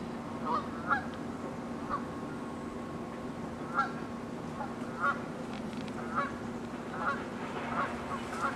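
Geese honking from the water, short calls repeated at irregular intervals, over a steady low hum.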